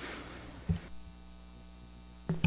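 Low, steady electrical mains hum in the meeting room's audio, with one soft thump about two-thirds of a second in.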